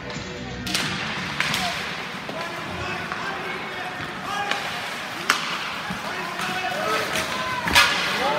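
Ice hockey play in a rink: sharp clacks of sticks and puck at a faceoff and in the play that follows, several spaced over the seconds, with the loudest crack near the end, over a background of voices.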